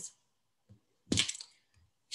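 A pause in speech: near silence broken by one short, crackling click about halfway through.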